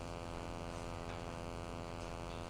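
Steady electrical mains hum with a long ladder of even overtones, holding at one pitch and level throughout.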